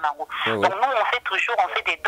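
Speech only: one person talking continuously over a telephone line, with the thin, narrow sound of a phone call.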